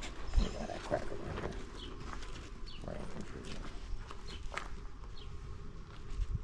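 A black-and-tan dog close to the microphone, holding a bone in its mouth, with a louder knock about half a second in. Short high chirps come and go above it.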